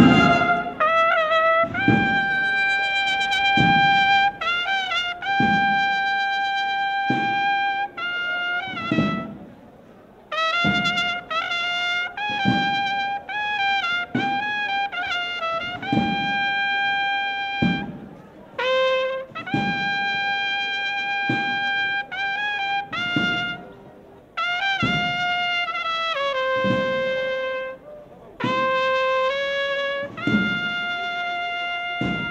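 Procession marching band playing a march: trumpets or bugles carry a melody of long held notes over a drum beat about once a second, with short breaks between phrases.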